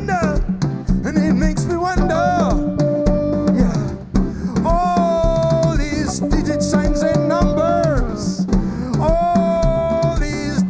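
Live reggae band playing: a male voice sings held, wavering notes over electric guitars, bass, keyboards and a drum kit. The band dips briefly about four seconds in.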